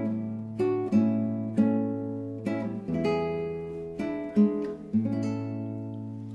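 Acoustic guitar playing the instrumental introduction to an Alpine folk song: plucked chords over bass notes, a new chord roughly every second, dying away near the end.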